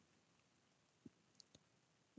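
Near silence broken by three faint computer mouse clicks, one about a second in and two more close together soon after.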